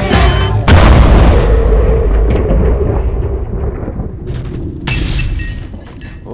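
A large explosion sound effect: a sudden loud boom about a second in cuts off the music, then a long rumble slowly fades. A second, shorter crash follows near the end.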